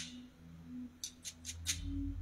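Faint held low notes from a church keyboard, fading in and out under a low hum, with a few light clicks in the second half.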